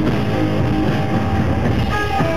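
A live rock band playing loud, electric guitar to the fore, in a poor-quality recording.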